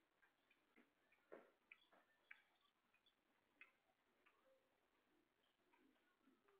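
Near silence, with faint, scattered ticks and clicks.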